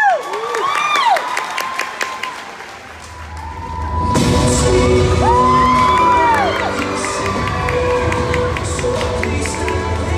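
Audience whoops and cheers, high sliding calls loudest in the first second or so. About three to four seconds in, the guard's recorded show music swells in with a deep bass and held notes, carrying on under the cheering.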